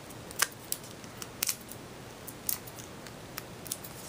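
Fingernails picking and peeling the paper backing off small foam adhesive squares stuck to a cardstock cut-out: an irregular string of sharp little ticks and clicks.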